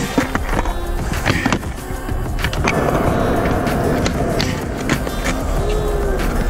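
Skateboard on a concrete skatepark: several sharp clacks of the board against the rail and ground in the first half, then the wheels rolling steadily over concrete from about halfway.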